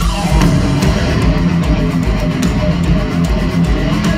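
Live heavy metal band playing loud through a festival PA: electric guitars over bass and pounding drums.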